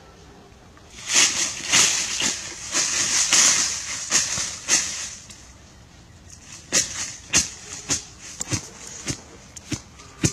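Crackling and rustling in dry leaf litter and brush for a few seconds, then a string of sharp separate crunches about a second and a half apart, like footsteps snapping dry twigs.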